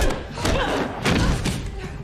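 Thuds of blows landing in a hand-to-hand sparring fight, with grunting, heard through a TV episode's soundtrack; several sharp thumps, one at the start and others about a second in.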